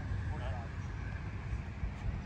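Unsteady low rumble of wind buffeting the microphone, with a faint distant voice about half a second in.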